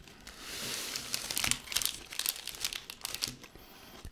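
Plastic chocolate-bar wrappers crinkling as they are handled and set down: a soft rustle at first, then a run of sharp crackles.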